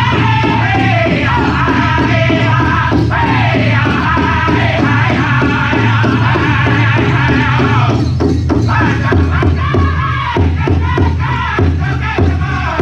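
A powwow drum group singing a northern-style song in high voices over a steady beat on a large shared powwow drum. About two-thirds of the way through the singing breaks off for a moment while the drumbeat carries on, then the voices come back in.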